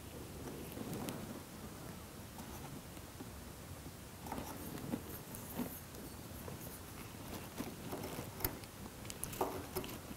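Marking knife drawn along a steel combination square, scoring a layout line into the wood: faint scratching strokes with small clicks of the blade against the square, one sharper click near the end.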